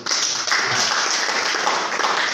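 Applause from a small audience of guests, dense and steady clapping.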